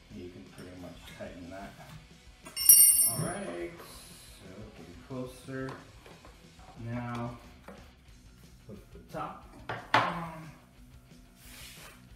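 Handling noise from a shop vac's motor head being worked on and set back onto its drum: a sharp metallic clink about two and a half seconds in and a knock near ten seconds. Background music with singing plays throughout.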